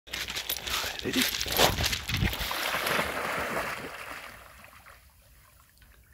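A dog splashing as it bounds into shallow water, the splashing dying away after about four seconds as it starts to swim.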